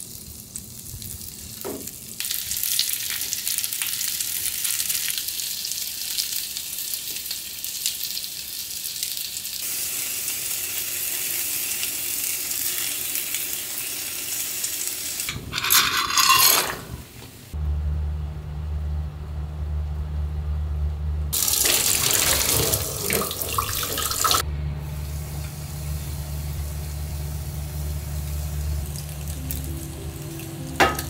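Pumpkin slices sizzling in butter in a frying pan, a steady hiss, then a short loud rattle and splash as dry penne is poured into a pot of boiling water about halfway through. After that a steady low hum sets in, with another spell of hiss a few seconds later.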